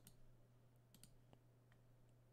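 Near silence: room tone with a faint steady hum and a few soft, short clicks, most of them around the middle.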